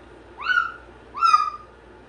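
Cockatoo giving two loud, high-pitched calls about a second apart. Each rises in pitch and then holds, and the second is the louder.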